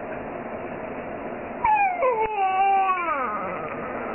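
A young baby's drawn-out whiny vocalisation, starting about a second and a half in and sliding steadily down in pitch over nearly two seconds.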